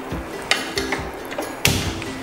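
A gas stove burner being lit with a handheld gas lighter: a faint click about half a second in, then a short, sharp burst near the end as the gas lights, over soft background music.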